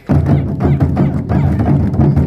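Ensemble of Japanese taiko drums struck with wooden sticks, coming in together with a sudden loud entry and carrying on in a rapid, dense rhythm of booming strokes.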